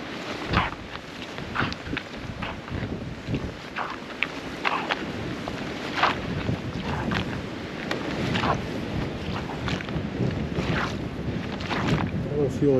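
Boots splashing through shallow meltwater lying on top of thin, softening ice, about one step a second, with wind on the microphone.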